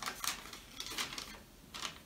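A folded paper slip being unfolded by hand, crinkling in four or so short rustles.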